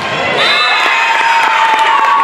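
A crowd cheering, with girls' high-pitched drawn-out screams that carry steadily, celebrating a point won in a volleyball rally.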